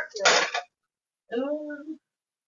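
Short fragments of a person's voice: a brief hissing burst near the start, then a short stretch of voiced sound in the second half.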